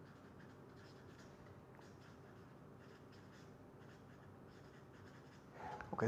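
Faint scratching of a felt-tip marker writing on paper, over near-silent room tone.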